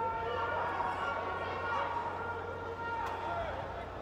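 Indistinct voices and chatter in a boxing arena, with a low steady hum underneath.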